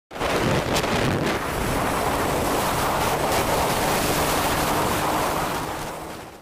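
Wind rushing over the microphone of a camera on a moving vehicle, a loud steady roar with a few brief knocks, fading near the end.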